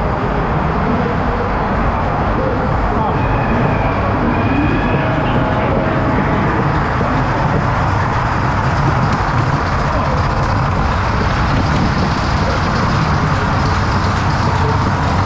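Mack two-storey ghost train car rolling along its track: a loud, steady low noise with the ride's effect sounds mixed in, and a brief high tone about three seconds in.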